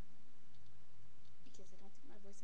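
A steady low hum over a webcam microphone, then, about one and a half seconds in, a woman's voice starting up again with sharp clicking sounds.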